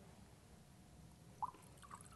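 Near silence: room tone, with one faint short blip about one and a half seconds in.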